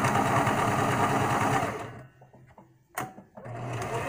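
Electric sewing machine stitching through shirt fabric at a fast, even pace, stopping about two seconds in, then starting again for a short run near the end.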